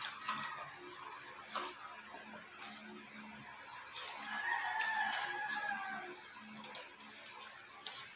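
A rooster crowing once, faintly: a single held call of about two seconds beginning about four seconds in. Faint rustling of filter paper being folded by hand runs throughout.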